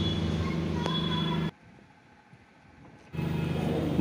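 Steady low hum of factory machinery, cutting out abruptly for about a second and a half midway, then resuming unchanged.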